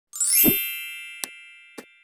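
Logo-intro chime sound effect: a bright bell-like chime with a low thump, ringing and slowly fading. Two short mouse-click sounds about half a second apart fall during the fade.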